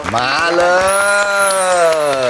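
A voice holds one long sung note that rises a little and then falls, part of a musical jingle.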